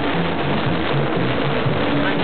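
Fairground music with a pulsing bass line, heard over a constant dense din of fairground noise.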